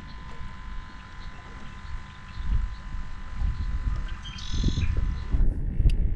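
Wind buffeting the microphone, a low uneven rumble that swells and fades, with a faint steady tone beneath it. A brief high-pitched call sounds about four and a half seconds in.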